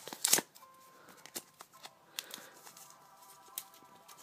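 Paper rustling as a homemade paper card pack is pulled open, a short loud rustle near the start, then a few faint crinkles and clicks as the cards are handled.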